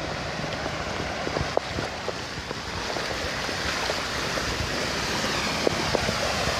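Heavy rain and running floodwater on a flooded street: a steady watery hiss. It grows a little louder in the second half as a truck drives through the deep water, pushing up a splashing wave.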